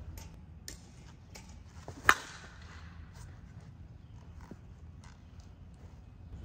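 A single sharp crack about two seconds in, with a short ring after it: a Short Porch Drip Johnny Dykes one-piece composite senior slowpitch softball bat hitting a softball. A few faint ticks and knocks come before and after it.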